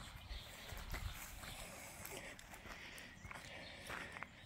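Quiet outdoor ambience with faint, irregular footsteps and a few low bumps.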